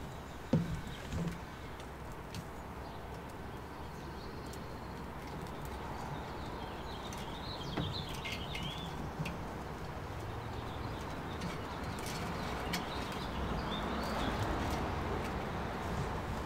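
Outdoor ambience: small birds chirping now and then over a steady low background hum, with a few sharp clicks and knocks of handling in the first second or so.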